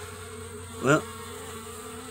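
Honeybees buzzing, a steady, even hum.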